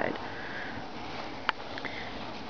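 A short breath or sniff through the nose in a pause between sentences, then a single faint click about one and a half seconds in, over low room noise.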